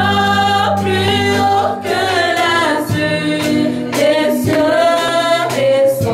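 Two women's voices singing a slow French hymn into microphones, the melody held and gliding between long notes.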